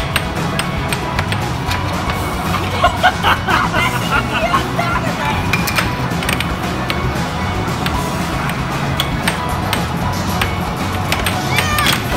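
Air hockey puck clacking off the mallets and table rails in a string of sharp, irregular hits, over arcade game music and a hum of voices.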